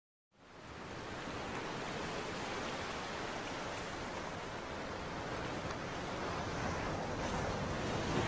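A steady rushing noise, with no tone or rhythm in it, fading in over the first second.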